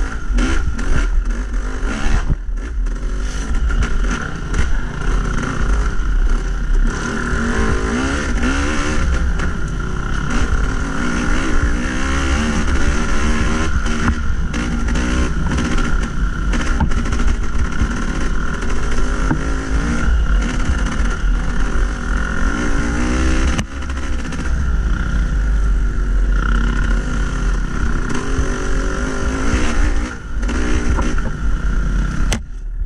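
Yamaha YZ250's two-stroke single-cylinder engine revving up and down continually as the dirt bike is ridden over rough trail. Wind rumble on the bike-mounted microphone and clatter from the bumps run underneath.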